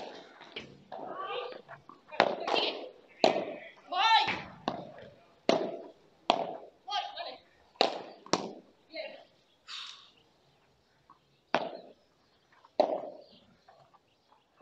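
Padel rally: the ball is struck by paddles and bounces, making sharp pops about a second apart, with a pause near 10 s and two more hits near the end. Players' shouts and short calls come between the shots.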